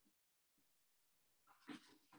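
Near silence: faint room tone, with a brief faint sound near the end.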